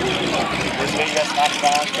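Boeing Stearman biplane's radial engine running at a low idle as it taxis, its low rumble dropping away about a second in, with people's voices talking over it.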